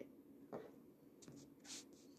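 Near silence: faint room tone with a low steady hum, a soft short sound about half a second in and a brief faint hiss near the end.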